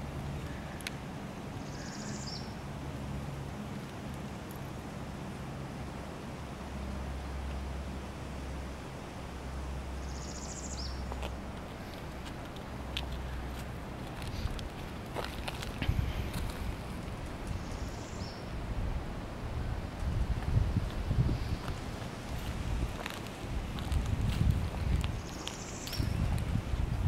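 Woodland outdoor ambience: a bird gives a short high call about every eight seconds over a low steady hum. In the second half, irregular low rumbling gusts of wind or handling noise on the microphone come in.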